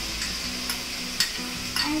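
Vegetables sizzling in oil in a frying pan as tomato and garlic puree is poured in, a steady hiss. A few sharp clicks of a spoon against the glass bowl come through in the second half.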